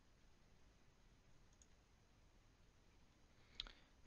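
Near silence: faint room tone, with a single short click near the end.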